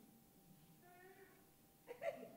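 Faint short squeak of an auditorium seat creaking, a little under a second in, high enough to pass for a child's whimper.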